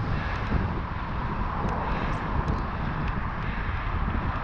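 Steady wind buffeting on an action camera's microphone and tyre noise as a gravel bike rolls along wet pavement, with a few faint ticks.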